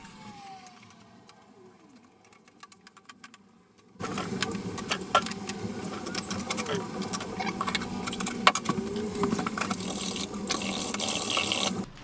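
Brush scrubbing a PVA and water mix onto bare brickwork: a fast, scratchy rasp with many small clicks that starts abruptly about four seconds in, after a quiet stretch.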